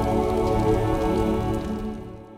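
Logo-sting sound design: a sustained low chord ringing out over a rumble, with a fine crackle through it, starting to fade near the end.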